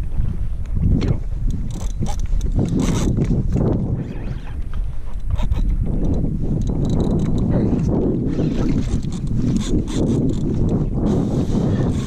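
Wind buffeting the microphone, with water slapping and lapping against a kayak hull, in a loud, uneven rush with many brief gusts and splashes.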